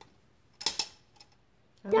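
Plastic Connect 4 checker dropped into the upright grid, clattering down the column: a quick pair of sharp clicks about two-thirds of a second in, then a faint tick.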